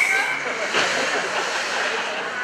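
Fabric rustle as the microphone brushes against a nylon baby-carrier backpack, loudest about three quarters of a second in, over the steady chatter of a crowd in an ice arena. A brief high steady tone sounds at the very start.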